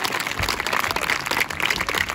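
An audience applauding, many people clapping at once in a dense, steady clatter.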